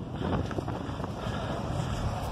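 Steady wind noise buffeting the microphone, a continuous low rush with no clear distinct events.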